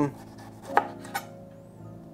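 Chef's knife cutting the bottom off a red bell pepper and striking a plastic cutting board: two short, crisp strikes close together, about a second in.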